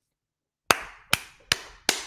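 A man clapping his hands four times, starting under a second in, about two claps a second, each sharp clap trailing off in a short ring.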